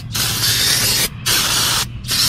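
Aerosol cleaner hissing from a spray can in two bursts, each under a second, with a short break about a second in, as a new brake rotor is sprayed clean before it is fitted.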